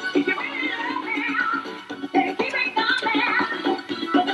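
Music: a song with a singing voice over backing instruments.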